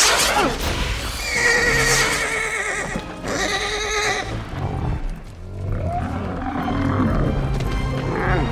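A horse whinnies twice, about a second and a half in and again around three and a half seconds in, over an orchestral film score, with a sharp hit right at the start.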